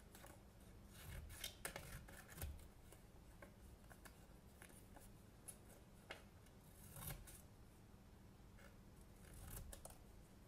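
Small scissors with steel blades and plastic handles snipping through a sheet of paper: a series of short, faint cuts, closely spaced about a second in and more spread out later.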